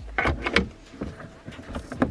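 A plastic centre-console shifter surround, with its leather gear gaiter, is handled and lowered over the gear lever. It makes a few short plastic knocks and rustles.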